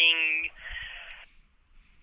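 A man's voice on a phone call drawing out one word for about half a second, then a short breathy hiss that fades away.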